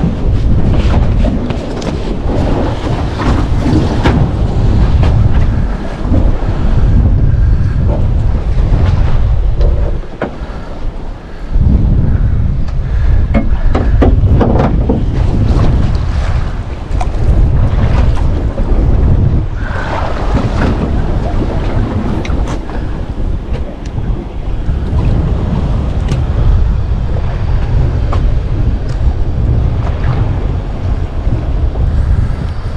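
Wind rumbling on the microphone over the wash of sea water against a small boat's hull, easing briefly about a third of the way in, with a few light handling knocks.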